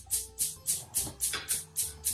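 Gas hob's spark igniter clicking repeatedly, about four sharp ticks a second, as a burner is being lit.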